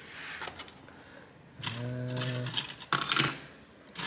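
Hands handling a laptop's plastic bottom case, giving scattered light clicks and taps, with a louder cluster of clicks about three seconds in, as the unscrewed base is tried for separation.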